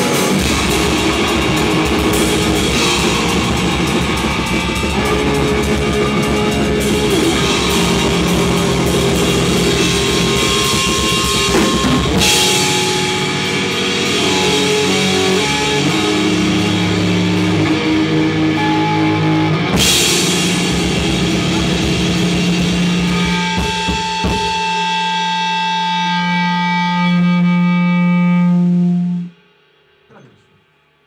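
An electric guitar and drum kit play a rock song together, with loud cymbal crashes about twelve and twenty seconds in. In the last few seconds the drums drop out and a held guitar chord rings on, then is cut off abruptly.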